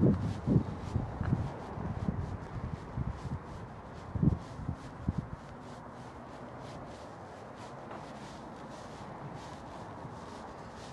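Footsteps on pavement and rubbing handling noise from a handheld camera, with a string of low thumps over the first five seconds or so. After that only a steady faint outdoor background remains.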